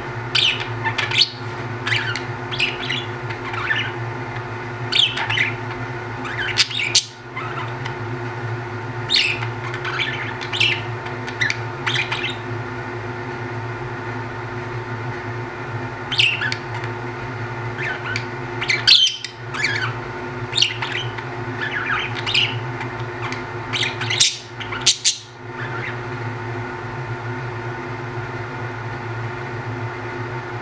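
Budgerigars chirping and squawking in clusters of short, sharp calls, with quieter stretches between, over a steady low hum.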